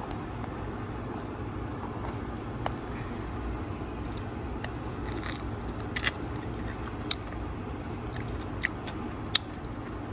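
A person chewing a yogurt-dipped strawberry close to the microphone: a few short, wet clicks scattered through, over a steady low background rumble.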